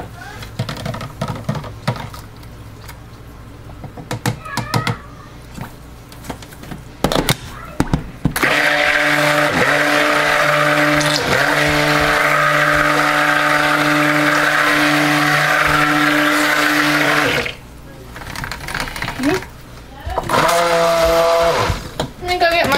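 Stick (immersion) blender running in raw soap batter in a plastic bowl, a steady motor hum that starts about eight seconds in, runs for about nine seconds and stops suddenly; the batter is being blended further to thicken it. Light clicks and knocks of handling come before it.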